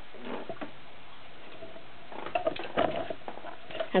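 Irregular light clicks and rattles of handling, beginning about two seconds in.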